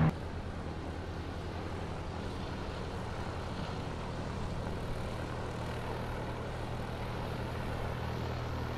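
Steady low engine drone of airport background, an unchanging hum that begins suddenly and holds at one level throughout.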